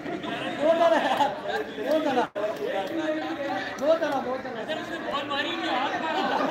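Several people chattering, their voices overlapping, with a brief drop-out in the audio just over two seconds in.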